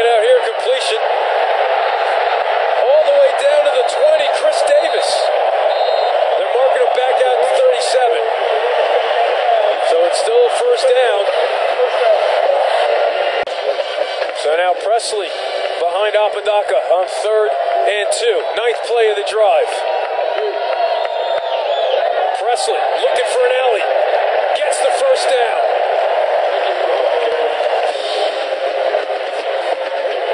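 Loud, continuous stadium crowd noise: many voices blending together without pause.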